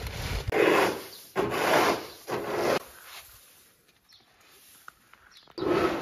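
Straw broom sweeping loose wheat grain across the ground: three scratchy strokes about a second apart in the first three seconds, then another just before the end.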